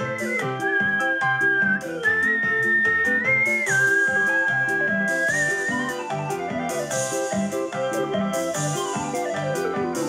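Instrumental break of a recorded song with a fairground sound: a whistle-like high lead holds long notes over busy chords and a bouncing bass line, with a falling run near the end.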